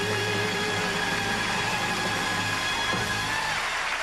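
Big band orchestra sustaining the closing chord of a ballad, with a held sung note with vibrato fading out in the first half second. The chord ends and applause begins near the end.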